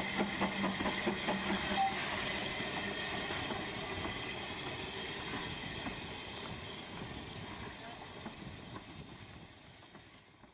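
Narrow-gauge steam locomotive Blanche, a small saddle-tank engine, chuffing as it pulls a carriage away, with steam hiss; the sound fades steadily as the train moves off.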